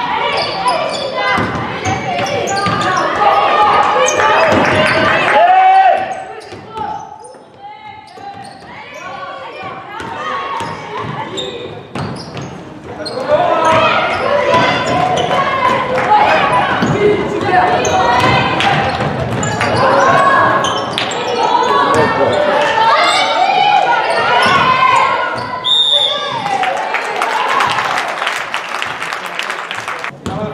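Basketball game in a reverberant sports hall: the ball bouncing on the hardwood floor amid players' and spectators' calls and shouts. A short referee's whistle sounds near the end.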